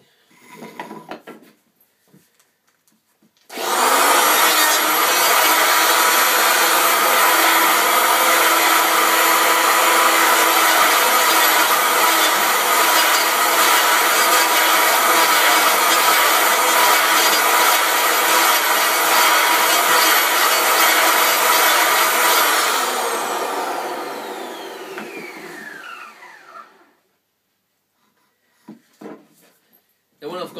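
Electric hand planer switched on a few seconds in, running steadily while it shaves down a maple cue shaft blank. After about twenty seconds it is switched off and winds down with a falling whine. A few small knocks follow near the end.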